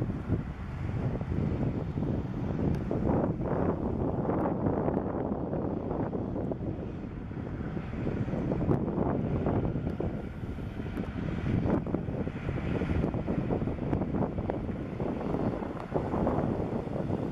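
Wind buffeting the microphone, a continuous uneven rumble, with heavy trucks running on the highway under it.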